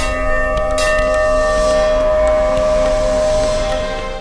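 Temple bells ringing in a produced intro sound effect: a long, sustained metallic ring with many overtones over a deep rumble, with a fresh strike about a second in.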